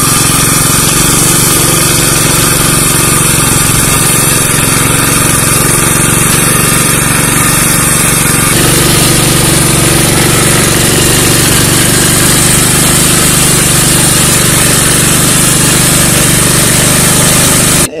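Walk-behind motor hoe (rotary tiller) with its small engine running steadily under load as its tines work the soil. The tone shifts slightly about halfway through.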